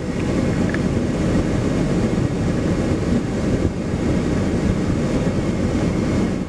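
Steady low rumble inside a vehicle's cabin, engine and road noise with no break or change.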